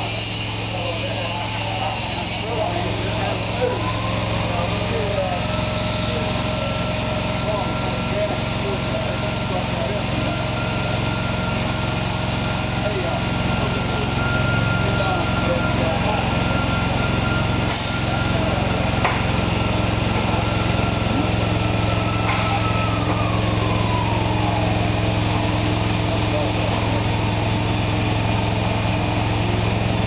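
LP-gas-powered hydraulic mold change cart running steadily as its hydraulic lift raises a loaded platform. A higher whine rises a few seconds in, holds, and falls away about three-quarters of the way through.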